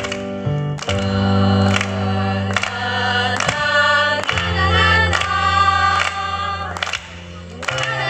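Women's vocal group singing together over keyboard accompaniment with sustained low bass notes, and hand claps on the beat a little more than once a second. The music drops away briefly near the end before coming back in.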